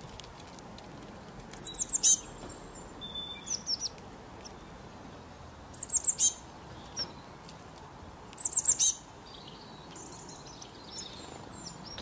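Small songbird giving short bursts of quick, high, downward-sweeping chirps: three loud bursts about two, six and eight and a half seconds in, with softer notes between. A steady faint hiss underneath.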